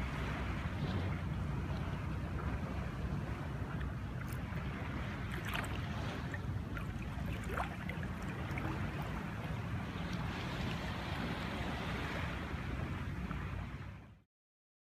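Wind buffeting the microphone in a steady low rumble, over the even wash of small sea waves lapping, with a few faint ticks in between.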